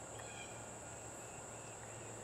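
Faint outdoor background: a steady high-pitched insect drone with a low hum beneath it.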